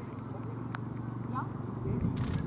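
Hoofbeats of a carriage-driving horse team moving across a muddy course, with voices in the background.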